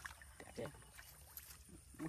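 Faint splashing of a hand groping in shallow, muddy water, with a few small knocks.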